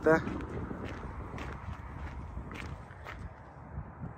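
A few footsteps on stony ground, about a second apart, over a low steady rumble of outdoor background noise.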